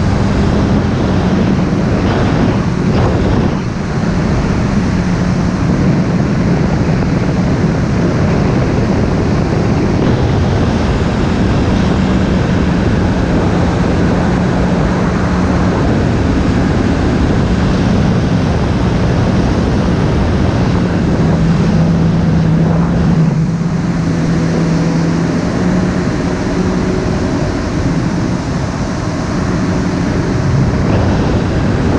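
WaveRunner personal watercraft's engine and jet drive running steadily under way, its note wavering a little lower and back a few times, over rushing water and wind on the microphone.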